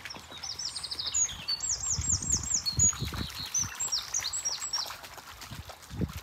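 A songbird singing several fast phrases of repeated high, down-curving notes over the faint trickle of a shallow stream, with a few dull low thumps about two to three and a half seconds in.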